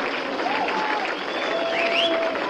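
A small club audience applauding, with voices calling out over the clapping.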